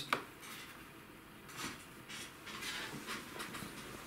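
A laptop being opened by hand: a sharp click at the start, then a few faint soft knocks and rubs as the lid is lifted and handled.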